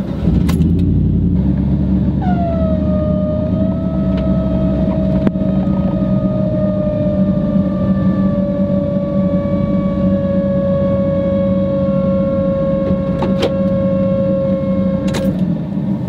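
Pickup truck engine running just after start-up, and about two seconds in a loud, steady squeaking squeal sets in, sliding down a little in pitch and holding until it stops near the end. The owner suspects a belt or pulley on the AC; it was smoking.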